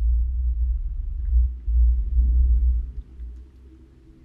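Loud, deep bass rumble of a dark intro soundtrack, swelling about two seconds in and dropping away about three seconds in.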